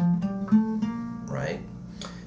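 Acoustic guitar picked one note at a time, climbing a B-flat major (Ionian) scale and arriving on a note that rings on about half a second in.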